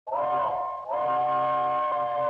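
Steam locomotive chime whistle sounding several notes at once: a short blast, then a long one starting about a second in.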